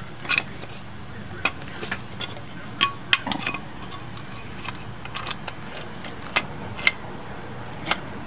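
Light metallic clicks and clinks, about a dozen scattered irregularly, as a star-wheel adjuster is worked into place by hand between a pair of steel drum-brake shoes. A faint steady low hum runs underneath.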